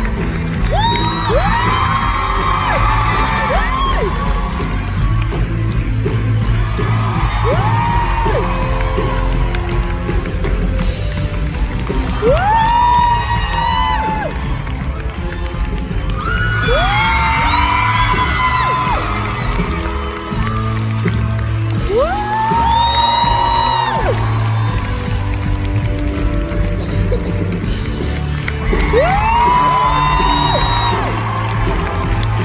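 A theatre audience cheering and whooping over a live band playing the curtain-call music of a stage musical. High, held whoops rise out of the crowd every few seconds as each performer bows.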